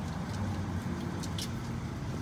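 Steady low rumble with a few faint clicks, like a vehicle engine or traffic in the background.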